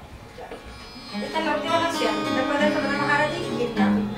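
Acoustic guitar being played, notes and chords ringing out, starting about a second in after a brief quiet moment.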